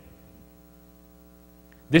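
Steady electrical hum with a stack of evenly spaced overtones. A man's voice starts again right at the end.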